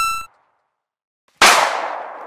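Sound effects of a subscribe animation. A short electronic chime fades out at the start. After about a second of silence comes a sudden sharp hit that trails away, the cue for the like button being pressed.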